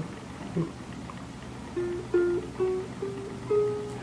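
Sapio 21-inch soprano ukulele: one plucked note, then five single notes plucked up the frets of one string, each a semitone higher than the last. It is a fret-by-fret check for dead frets, and each note rings clear.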